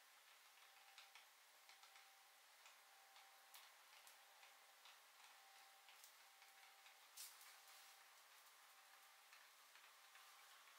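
Very faint, irregular crackling and ticking of burning matchsticks, with a sharper crack about seven seconds in.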